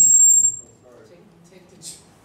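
A single high, bell-like metallic ring that dies away within about half a second, followed by faint voices.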